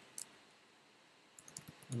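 Computer keyboard keys clicking as code is typed: one keystroke, a pause of about a second, then a quick run of several keystrokes near the end.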